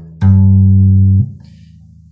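Electric upright bass plucked jazz-style pizzicato: one loud, low note with a percussive click at the start as the string hits the fingerboard, held about a second and then cut off suddenly.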